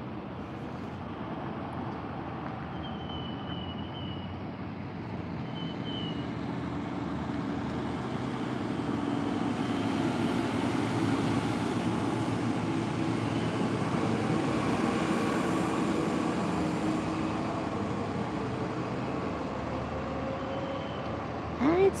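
Steady engine noise from a passing vehicle that slowly grows louder toward the middle and then eases off a little, with a couple of brief high chirps a few seconds in.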